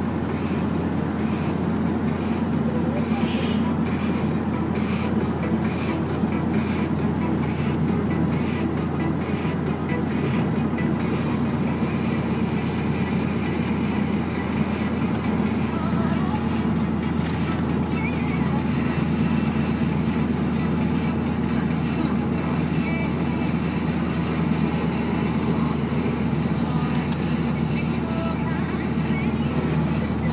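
Steady drone of a moving vehicle heard from inside its cabin, with music playing along with it.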